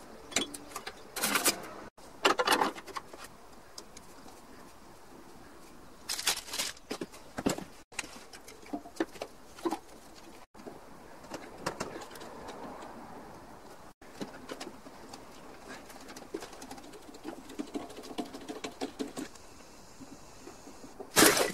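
Clicks, knocks and clatter of hands working on a VW Beetle engine's fan belt, pulley and distributor leads. The sound comes in short bursts, broken by several sudden cuts.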